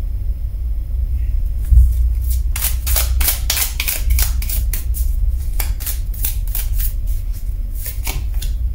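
A tarot deck shuffled by hand, overhand: a quick run of sharp card snaps, about three a second, from about two seconds in until near the end. A thump comes just before the shuffling starts, and a steady low rumble runs underneath.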